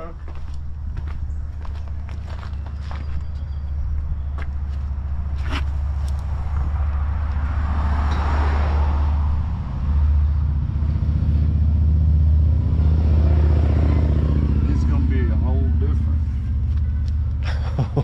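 A motor vehicle engine running with a low steady hum that grows louder through the middle of the stretch; a swell of noise rises and fades about eight seconds in.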